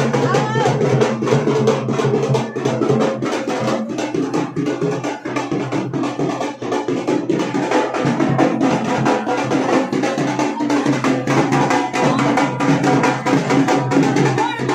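Loud drumming in a fast, steady beat with music, with crowd voices over it.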